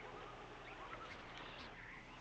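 Near silence: faint steady background hiss with a low hum, and no distinct sound event.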